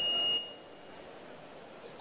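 A steady high-pitched ringing tone from the public-address system, fading out about half a second in, followed by faint hall noise.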